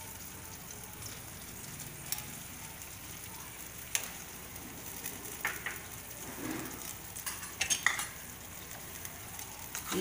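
Mixed vegetables and green chilli paste frying in oil in a pan on a gas stove, a steady low sizzle. A spoon and spatula stir the pan, with a few sharp clinks against its side.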